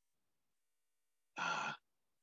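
Silence, then a single short sighed "ah" from the preacher's voice about a second and a half in.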